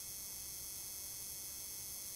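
Faint, steady electrical hum and hiss, with a few thin high whine tones held throughout.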